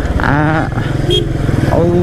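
Motorcycle engine running steadily while riding along at road speed.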